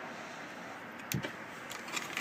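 Low, steady background hiss with one sharp click a little over a second in and a fainter tick near the end, handling noise at the boat's helm.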